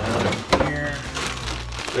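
A refrigerator drawer being slid open, with a sharp knock about half a second in, followed by plastic bags rustling as one is lifted out.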